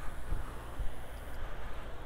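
Low, fluctuating outdoor background noise with no distinct event in it.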